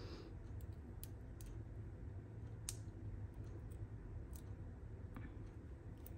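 Small craft scissors snipping a tiny scrap: a few faint, sharp clicks spaced irregularly, the clearest a little before the middle.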